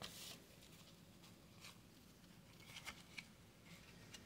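Near silence with a few faint, short clicks and rustles of cardboard trading cards being handled and shifted in the hands, with a small cluster of them about three seconds in.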